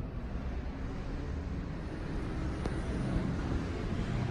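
Steady low rumble of background noise inside a large stone church, with a single faint click about two and a half seconds in.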